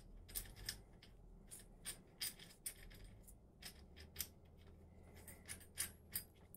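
Faint, irregular metallic clicks and ticks of an ER32 collet and collet nut being threaded by hand onto a collet block.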